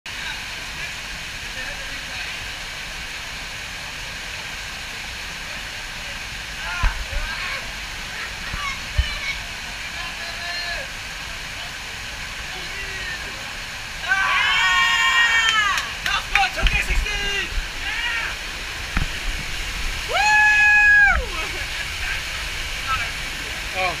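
Water rushing steadily down a rock chute into a pool. Over it, loud shouting from people, with a long held call about twenty seconds in.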